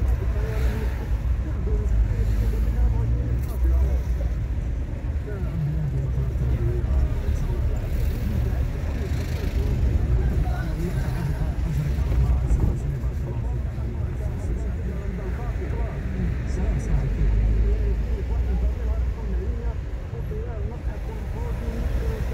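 A car driving on city streets: a steady low engine and tyre rumble that rises and falls slightly as it goes.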